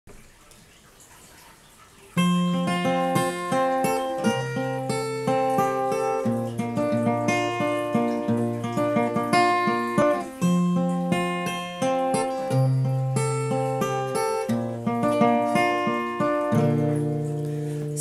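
Acoustic guitar with a capo, played as an instrumental intro: separate picked notes over held low bass notes. It starts about two seconds in.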